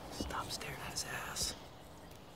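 A person whispering unintelligibly: a few short hushed phrases in the first second and a half, then only the quiet outdoor background.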